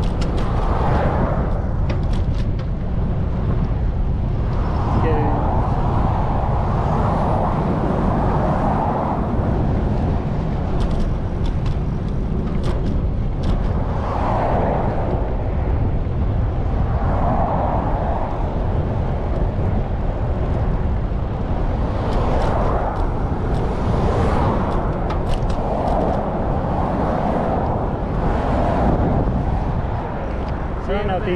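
Wind rumbling on the microphone of a camera riding on a moving bicycle, with road traffic on the adjacent highway swelling past every few seconds.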